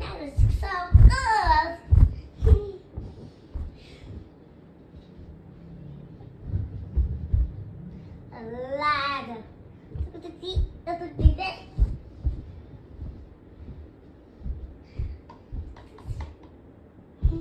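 A young child's voice in short sing-song phrases with gliding pitch, once near the start and again around nine seconds in, over scattered low knocks and thumps.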